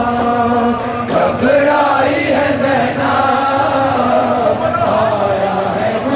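Voices chanting a slow Shia mourning chant, holding long notes that step from one pitch to the next.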